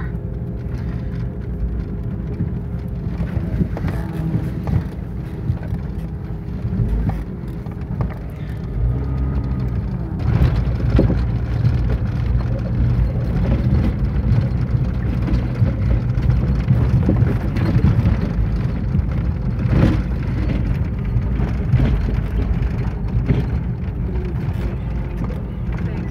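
Four-wheel-drive Jeep driving slowly on a dirt track, heard from inside the cabin: a steady low engine and road rumble with occasional knocks from bumps. The engine note rises and gets louder about ten seconds in.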